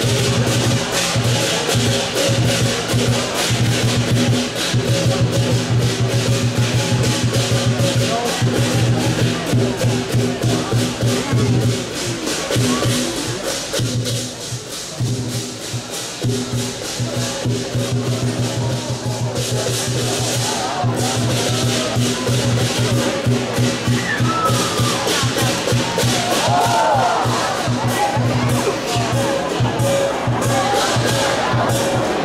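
Chinese lion dance percussion: a big drum with crashing cymbals and gongs beating a fast, continuous rhythm, easing for a moment about halfway through before picking up again. Faint crowd voices underneath.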